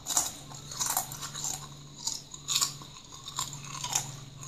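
Calbee Honey Butter potato chips being bitten and chewed, a run of about six crisp, irregular crunches. A faint steady low hum sits underneath.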